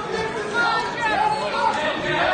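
Spectators talking and shouting over one another, a steady chatter of many voices around a boxing ring.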